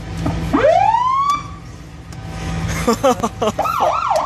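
Ambulance electronic siren giving one rising wail that climbs for about a second and cuts off, then a short fast up-and-down yelp near the end. The ambulance's diesel engine idles underneath.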